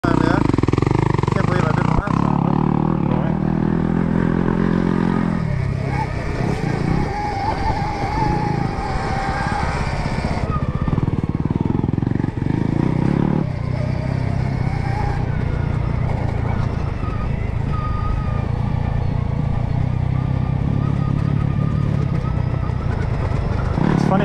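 Stark Varg electric dirt bike ridden along a dirt trail: a faint electric-motor whine that rises and falls with the throttle, over a steady rumble of tyres, chain and riding noise.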